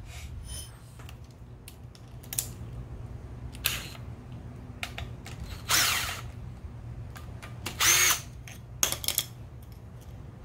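A ratchet and 10 mm socket working the camshaft-holder bolts out of a Honda CBR600F4i cylinder head. The sound comes as several short bursts of ratcheting, the longest about six seconds in and again about eight seconds in, over a steady low hum.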